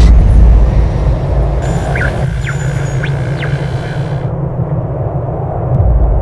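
Deep cinematic boom hits, one at the start and another shortly before the end, over a steady low rumble, with a few short falling whistles in the middle.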